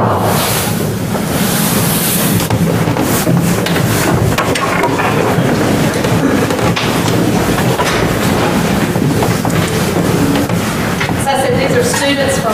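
Indistinct voices mixed with a steady rumbling room noise in a large hall, with no single clear speaker until one voice starts talking near the end.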